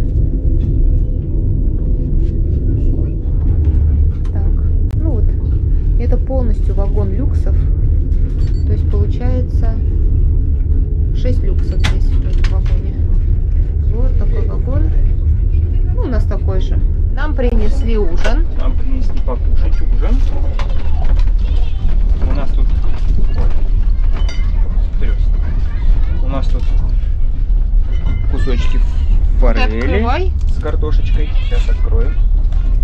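Steady low rumble of a moving passenger train heard from inside the carriage. Now and then a child's high voice and quiet talk come through it.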